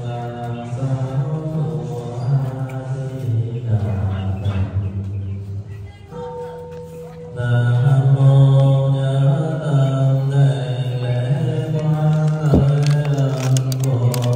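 Low-pitched Buddhist chanting, steady and droning. It drops away about halfway through and comes back louder a moment later, with a few sharp clicks near the end.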